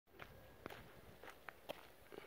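Faint footsteps of a person walking: about five soft, unevenly spaced steps against near silence.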